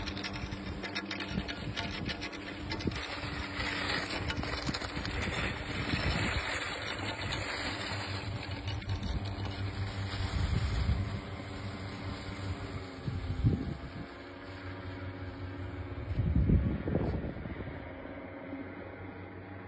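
Steady drone of a small engine on a powered hang-glider flying overhead, with wind buffeting the microphone in louder gusts near the end.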